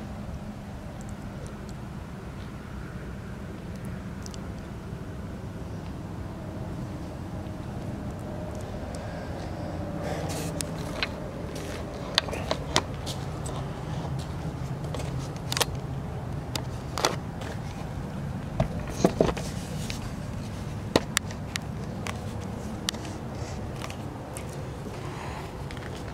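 Steady low rumble of distant road traffic, with scattered sharp clicks and knocks from about ten seconds in.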